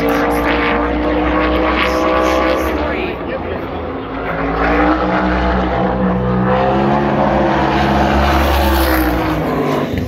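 Winged sprint car engine running hard on the track, its pitch sliding down and back up over a few seconds at a time as the throttle is lifted and reapplied through the corners of a qualifying lap.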